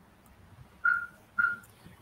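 Two short whistle-like tones at one steady high pitch, about half a second apart.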